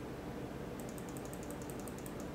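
A quick run of about ten light clicks at a computer, starting just under a second in, over a steady low hum of room noise.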